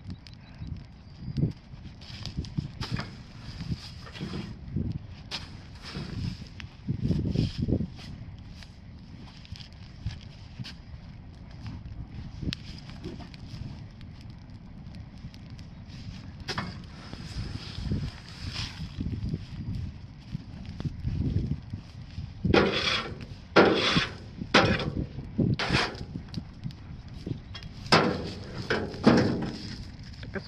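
Straw-bale bonfire crackling while a pitchfork rustles through straw and scrapes on a metal trailer bed. Several loud, sharp knocks and scrapes come in the last several seconds as the trailer is emptied.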